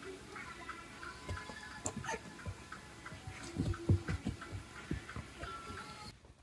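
Faint music of short, repeated high notes, with a few soft low thumps about halfway through.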